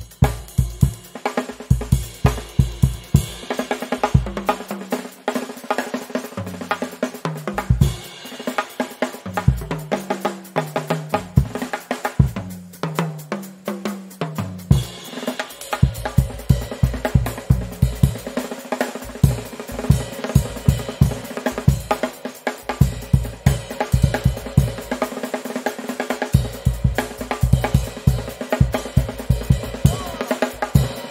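Drum kit played hard in a busy passage: kick drum, snare, hi-hat and cymbals struck in quick succession, with deeper pitched notes running through the middle stretch.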